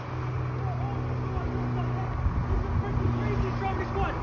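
School bus engine running with a steady low hum as the bus drives toward the listener, with voices calling out over it.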